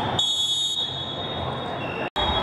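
A steady high-pitched tone starts a moment in and holds, with a shriller layer above it for about the first half-second.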